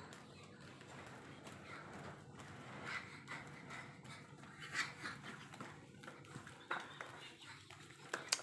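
Soft, irregular footsteps and taps on a hard tiled floor, with faint low voices or whispering under them.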